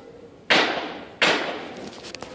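Two loud, sharp bangs about three quarters of a second apart, each ringing out and fading over about half a second.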